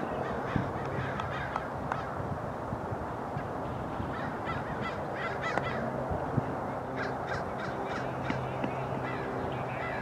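Harsh, caw-like bird calls repeated several times over a steady low hum, with a sharp knock a little past six seconds.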